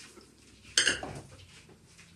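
A single sharp clatter a little under a second in: a hard object knocking against something hard, with a brief ring.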